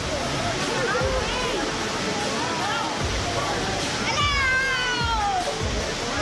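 A waterfall rushing into a pool under the scattered voices and shouts of people bathing. About four seconds in, one long high cry slides down in pitch.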